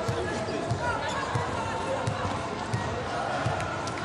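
A volleyball bounced repeatedly on the hard court floor: about six dull thumps roughly two-thirds of a second apart, over arena crowd chatter.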